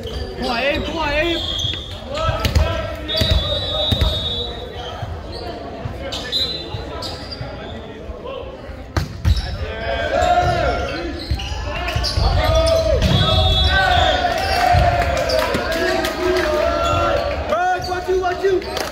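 Echoing gym sound at a volleyball match: players and spectators talking and calling out, with a volleyball bouncing on the hardwood court and scattered sharp knocks, plus a few high squeals.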